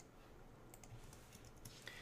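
Faint, scattered clicks of computer keyboard keys as a line of code is typed, over near-silent room tone.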